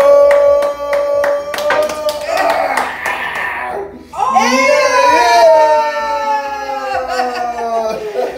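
Hand clapping at about three to four claps a second under a long held cheering voice, ending about two seconds in. A rough, noisy outburst follows, then a long wailing voice that slowly falls in pitch.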